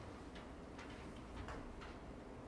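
Library reading-room ambience: a low steady hum with about five faint, light clicks and ticks scattered through it.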